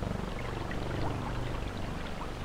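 Water pouring and gurgling in small rising blips from a jug's spigot, over a steady low hum.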